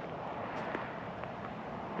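Quiet outdoor background: a faint, steady, even hiss with a few small ticks.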